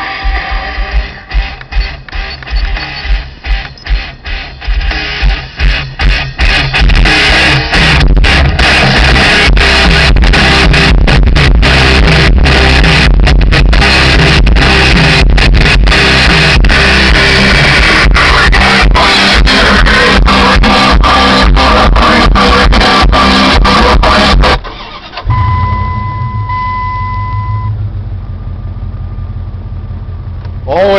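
Rock music played very loud through an Alpine car audio system in a pickup cab. It cuts off suddenly about 25 seconds in, followed by a steady electronic chime for about two seconds and the Dodge pickup's engine starting and idling.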